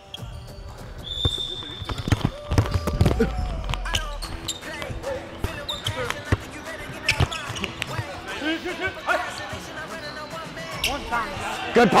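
Basketball being dribbled on a hardwood gym floor: a string of sharp, irregular bounces, with players' voices calling out around them.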